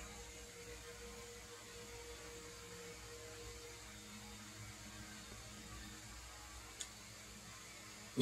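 Quiet room tone: a faint steady hum with light hiss, and one small click near the end.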